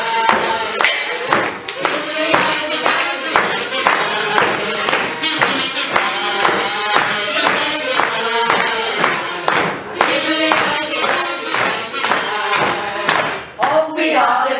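A small costumed troupe playing a marching tune: a hand-held frame drum beating steady time, about three beats a second, under a melody line.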